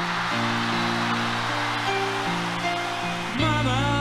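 Live concert recording played from a vinyl record: a slow piano intro with crowd cheering. A man's singing voice comes in near the end.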